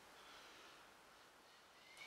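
Near silence: faint room hiss, with a faint rising whistle near the end.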